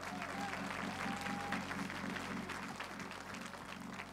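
Congregation applauding, a dense patter of many hands clapping, over soft, steady background music from a church band.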